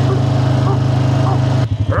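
Honda quad bike engine running steadily under throttle; about one and a half seconds in the throttle is let off and the engine note falls away to slow, separate firing pulses. A man's short shout of "Ow!" comes right at the end.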